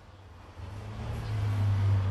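A low, steady hum that grows louder from about half a second in and holds at its loudest to the end.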